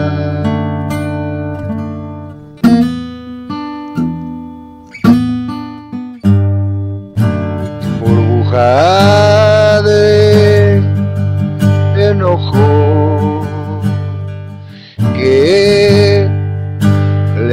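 Acoustic guitar playing chords, struck afresh several times and left to ring between strikes. A voice rises into a long held sung note a little past the middle and comes in again near the end.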